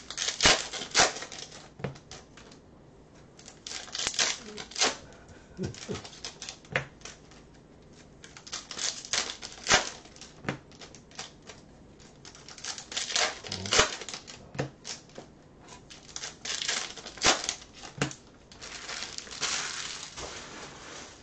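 Packs of Bowman Chrome baseball cards being opened and the cards flicked through by hand: wrappers crinkling and cards clicking against each other in short flurries every second or two, with brief pauses between.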